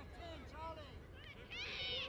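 Overlapping voices of children and adults calling and chattering around a junior rugby field, with a louder high-pitched shout near the end.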